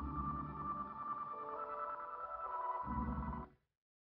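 Electronic music: held synthesizer tones that step in pitch over a low pulsing bass, cutting off suddenly about three and a half seconds in.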